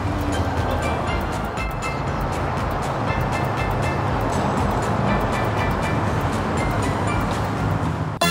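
Background music over a steady rushing noise, unbroken across the picture cut.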